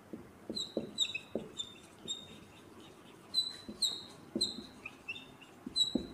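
Dry-erase marker squeaking on a whiteboard as words are written: a run of short, high, irregular squeaks mixed with soft taps and strokes of the marker tip.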